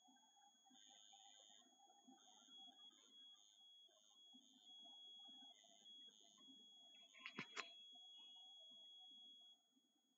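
Near silence with a faint high-pitched tone that beeps on and off irregularly, then holds steady for about four seconds before cutting off near the end. A quick cluster of clicks comes about halfway through.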